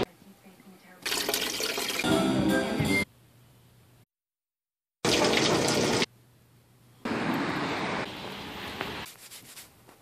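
A string of unrelated one-second snippets, each cut off abruptly, with one fully silent second in the middle; running water, from a bottle filling at a water station and a top-load washing machine filling, is among them.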